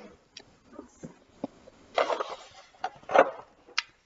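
Handling noise as a small case of sewing thread is fetched and opened: scattered light clicks and knocks, a couple of brief rustles, and a sharp click near the end.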